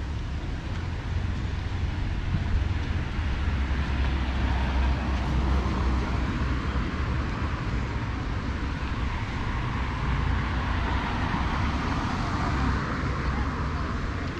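Road traffic noise with a steady low rumble, growing louder through the middle and easing near the end.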